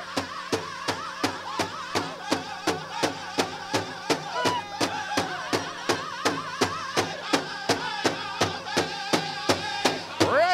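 Powwow big drum struck by several drummers together in a steady beat of about three strikes a second, with a drum group's high-pitched group singing over it: an intertribal song.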